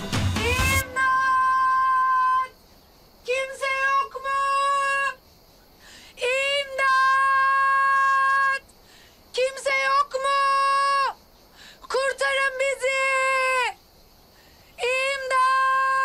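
A woman shouting at the top of her voice, about six long held cries at a steady high pitch with short pauses between, loud enough to hurt the ears: desperate cries for someone to come and rescue them.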